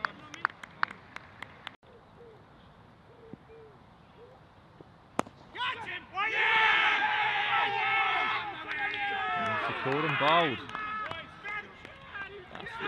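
A single sharp knock about five seconds in, then cricket fielders shouting an appeal and cheering loudly for several seconds as a wicket falls. A few scattered sharp claps sound in the first couple of seconds.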